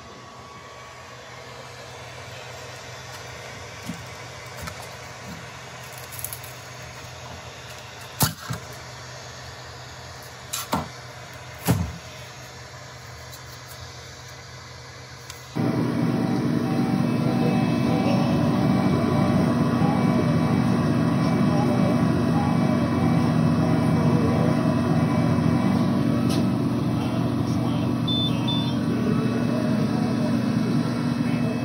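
For about the first half, a faint steady hum with a handful of sharp knocks and clicks. About halfway through it cuts abruptly to the xTool M1 laser engraver running, its exhaust fan and ducting giving a loud, steady whir with a faint steady tone in it.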